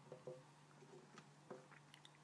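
Near silence: room tone with a faint steady hum and a few faint taps, as a plastic food container is picked up and handled.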